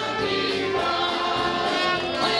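Live gospel song sung by several voices together, a man and women, holding long notes over musical accompaniment.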